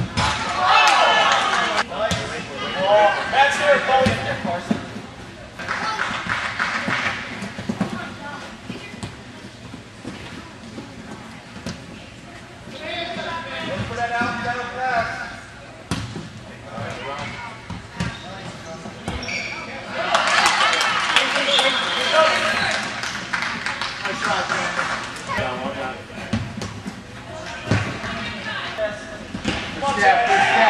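Futsal ball being kicked and bouncing on a hard indoor court, scattered sharp thuds ringing in a large hall, with players and spectators shouting in bursts.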